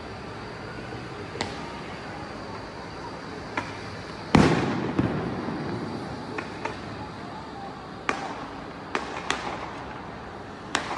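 A series of about nine sharp bangs at irregular intervals, echoing across open ground, the loudest about four seconds in, over a low steady background of distant noise.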